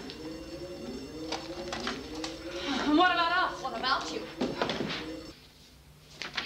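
People's voices crying out without clear words, with scattered knocks and bumps of a scuffle; a wavering high cry about halfway through, and the sound cuts off abruptly about five seconds in.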